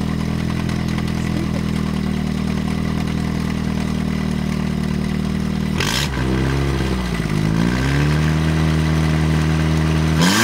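1998 Toyota Corolla four-cylinder engine running with the hood open, being run to destruction with sand in it. It runs steadily for about six seconds; then there is a sharp click, and the engine speed sags and picks back up, settling at a faster steady speed.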